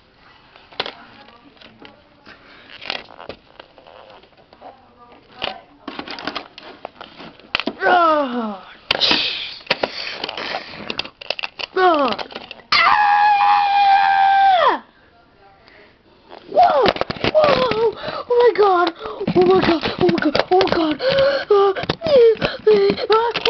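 Voices making wordless play sound effects: faint clicks and knocks at first, then falling cries about eight and twelve seconds in, a high, held scream of about two seconds, and rapid excited vocalising near the end.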